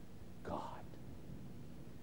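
A man says one word softly, close to a whisper, about half a second in. Otherwise there is only quiet room tone with a faint steady low hum.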